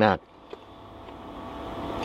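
A man's word cuts off just after the start, then a pause holding only faint low background noise that slowly grows louder, with one small tick about half a second in.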